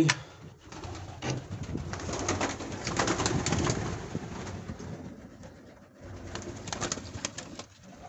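Domestic pigeons flapping their wings in a flurry of short strokes, loudest about two to four seconds in and again near the end, with low cooing. The birds are startled by the keeper entering the aviary.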